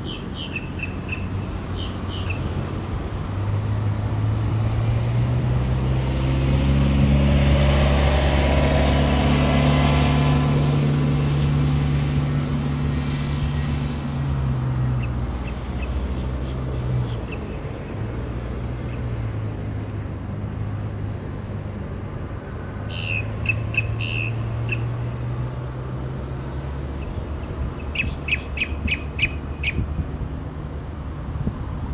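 Boat-tailed grackle giving bursts of short, rapid clicking calls near the start, about two-thirds of the way through, and near the end. A passing car, its low engine hum and tyre noise loudest in the middle, runs underneath.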